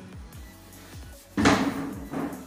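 White plastic chair set down on a tiled floor: one sharp knock with a short ring about a second and a half in, over background music with a steady beat.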